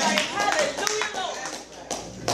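Congregation clapping with voices calling out, fading near the end.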